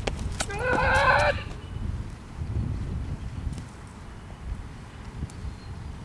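A man's loud, high-pitched yell lasting about a second as he releases a 6 kg throwing hammer, rising in pitch at its start. A low rumble follows.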